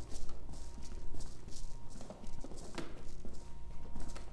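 Footsteps on a wooden floorboard floor, walking at an even pace of about two steps a second, over a low steady hum.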